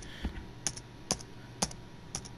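Slow typing on a Lenovo S10-3t netbook keyboard: four separate keystrokes, roughly half a second apart.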